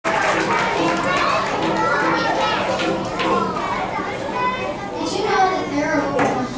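Many children chattering at once in a large, echoing hall: a steady babble of overlapping voices.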